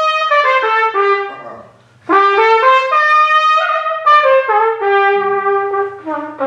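Solo trumpet playing two short melodic phrases with a brief gap about two seconds in. The second phrase ends on a long held low note.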